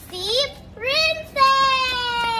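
A young girl's high voice singing out: two short syllables, then a long drawn-out note from about one and a half seconds in that slowly falls in pitch.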